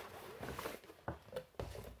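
Faint rustling and a few light clicks of a cardboard product box and its tray being handled.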